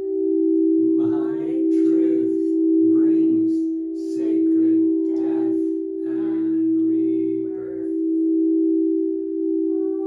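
432 Hz-tuned crystal singing bowls ringing in a steady, slowly pulsing drone. From about a second in until near the end, a voice vocalises over it in short phrases.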